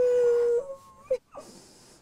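A woman crying with joy: one held, high-pitched whimpering wail lasting under a second, then a short sob about a second in.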